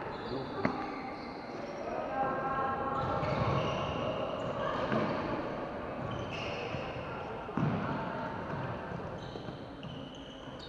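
Sounds of a floorball game in a large, echoing sports hall: sticks and a plastic ball knocking, players' feet on the wooden floor with short shoe squeaks, and players calling out. A louder knock comes about three-quarters of the way through.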